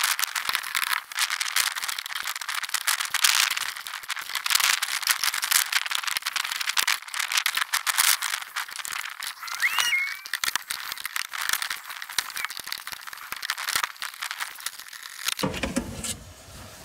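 A thin, fast clatter of clicks and rattles as the plastic rear-quarter trim panel and the metal-cased Tesla gateway computer are worked loose by hand and tool; the stiff plastic gives little, with a brief squeak about ten seconds in.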